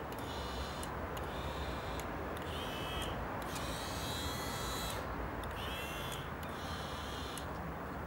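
Small electric gear motors of a SportsPan motorised pan and tilt head whining in short spells as the head pans and tilts the camera, starting and stopping about six times, with the pitch of the whine shifting from one spell to the next. Faint clicks fall between the spells over a steady background hum.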